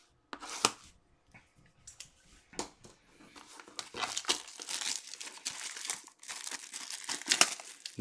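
Clear plastic shrink-wrap being torn and peeled off a sealed trading-card box. A few scattered crackles come first, then dense, continuous crinkling from about halfway in.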